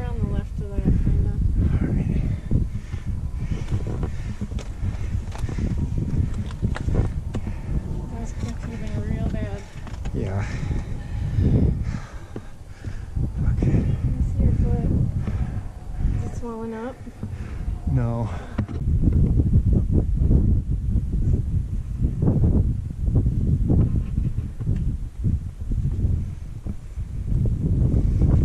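Wind rumbling on the microphone, with a person's voice coming through in a few brief snatches, the clearest a little past halfway.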